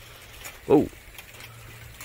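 Light rain falling: a faint steady hiss with scattered small ticks of drops.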